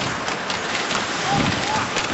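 Ice hockey arena crowd noise from a TV broadcast, a steady hiss-like wash, with scattered clicks and knocks from sticks, skates and the puck on the ice and boards.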